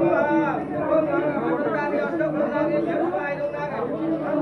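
Several people talking at once in overlapping chatter, with no music.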